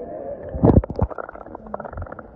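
Muffled underwater sound of a swimming pool: water churning and bubbling as a swimmer moves through it, with a louder gurgling rush a little over half a second in.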